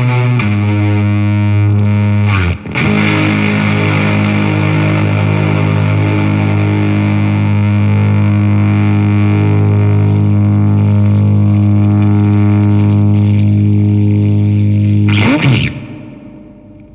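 Electric guitar played through a germanium-transistor Zonk Machine–style fuzz pedal: a low fuzzed note struck about half a second in, cut off briefly, struck again and held with long sustain. Near the end a short noisy flourish, then the sound fades away.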